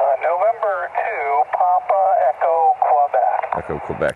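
A distant station's voice coming in over a Yaesu FT-818 on 10-meter single sideband: thin, narrow-band speech over a steady hiss of band noise. Just before the end a close, full-sounding man's voice starts over it.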